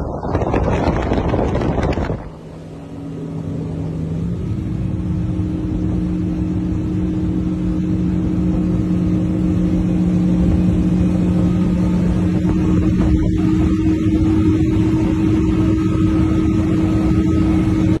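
Mercury 350 Verado outboard running at high cruising speed. For the first two seconds it is buried under wind noise. Then it settles into a steady, even drone that steps up a little in pitch about four seconds in and slowly grows louder.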